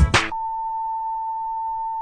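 A single steady beep, one pitch held for about two seconds, cutting into hip hop music: a censor bleep over the song. The music breaks off just before the beep and comes back near the end.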